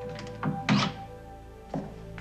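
A door thunking as it swings shut, with a couple of sharp knocks close together under a second in and a lighter knock near the end, over soft background music with held notes.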